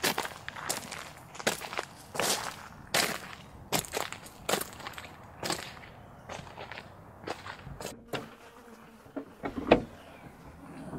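Footsteps outside a car, about one step every three-quarters of a second. Near the end comes a louder clunk as the car's trunk is unlatched.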